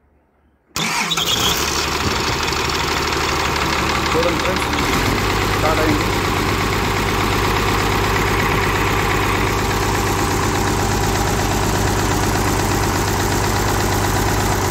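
Komatsu PC200 excavator's turbocharged diesel engine starting on a newly fitted starter motor. It comes in suddenly and loud about a second in and runs on steadily at idle, settling into a steadier low note about five seconds in.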